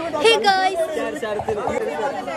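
Speech only: people chattering, with a woman's voice close to the microphone.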